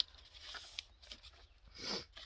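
A sheet of white paper being folded and creased by hand: a sharp tap at the start, then faint rustling and small ticks of the paper, with a short louder rustle near the end.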